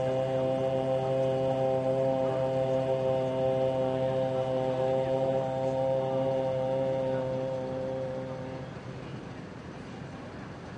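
A sustained drone on one low pitch with its overtones, held without change and then fading out about nine seconds in.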